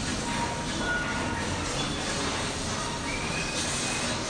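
Spooky ambient soundscape playing over the store's speakers: a steady mechanical rumble scattered with brief high-pitched metallic squeaks and creaks.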